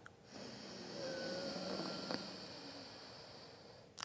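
A slow, soft inhalation through the left nostril, the right nostril held closed by the thumb, in alternate-nostril breathing: an airy hiss that swells over about a second and then fades out near the end.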